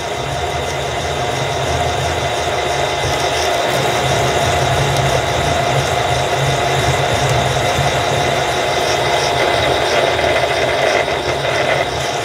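Milling machine running slowly, around 170 RPM, with a 20 mm twist drill cutting down into a metal block: a steady motor and gear drone with a held mid-pitched whine.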